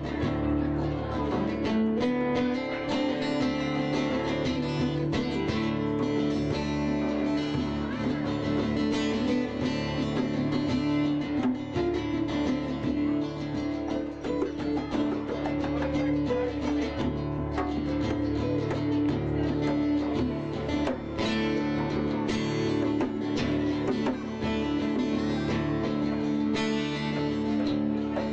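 Acoustic guitar strummed steadily with a hand drum played along, a live instrumental passage with no singing.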